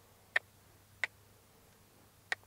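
Two short, sharp tongue clicks about two-thirds of a second apart, a handler's cue urging a horse to step back.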